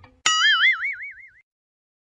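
Cartoon "boing" sound effect: a twangy, springy tone whose pitch wobbles rapidly up and down, fading out after about a second.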